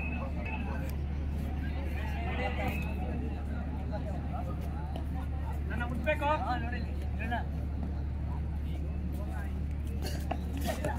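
Indistinct voices of players and onlookers over a constant low hum, with a short burst of louder calling about six seconds in.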